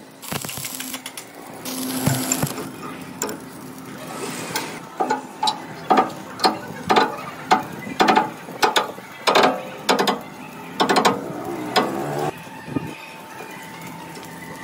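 Two short spells of stick-welding arc crackle, then a lever-operated screw jack braced across a bent steel plate is cranked in strokes, clicking about twice a second as it presses the plate straight.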